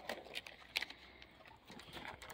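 Faint handling noise: scattered light clicks and rustles, a few in quick succession near the end.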